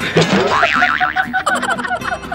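Two men laughing hard, with a wobbling, spring-like cartoon sound effect laid over the laughter.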